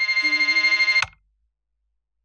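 A bell ringing fast and steadily, with a woman's devotional singing underneath; both stop abruptly about a second in, leaving silence.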